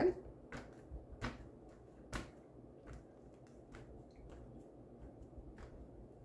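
Faint handling sounds of paper tags on a cutting mat: soft rustles and light taps, with a few sharper clicks, the clearest about one and two seconds in.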